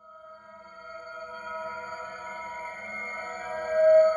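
Synthesized logo sting: a chord of several steady tones that swells in from silence and grows louder, peaking near the end.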